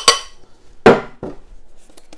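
Glass clinking against a glass mixing bowl, with a brief ring. About a second in comes a single sharp knock on a wooden worktop, then a lighter knock.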